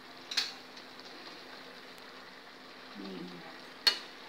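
Two short clinks of metal kitchen utensils against the pot: one a moment after the start and a sharper, louder one near the end. A faint steady hum runs underneath.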